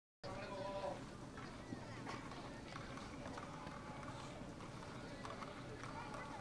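Ballpark ambience: faint, distant chatter of spectators in the stands, with a brief steady tone in the first second.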